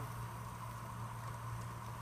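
Faint steady low hum with a quiet even hiss from a steel pot of rice cooking in boiling saffron broth on the stove.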